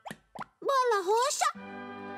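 Two quick cartoon 'plop' sound effects for the bouncing balls, then a baby cartoon voice babbling in a short up-and-down glide. Gentle children's music starts near the end.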